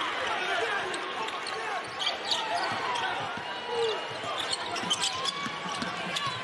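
Basketball game sound on an arena court: a ball bouncing on hardwood, repeated short sneaker squeaks, and a steady crowd noise underneath.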